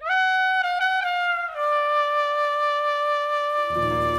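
Jazz recording opening on a solo trumpet: a few short notes, then one long held note. Lower instruments come in under it near the end.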